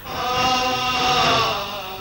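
Background film music: a single held, chant-like choral note that swells in at the start, holds, and dips slightly in pitch near the end.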